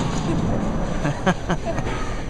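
Bowling-centre background noise: a steady rumble from the lanes, with a few sharp knocks a little after a second in.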